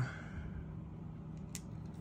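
Quiet room tone with a steady low hum and a few faint clicks, the clearest about a second and a half in.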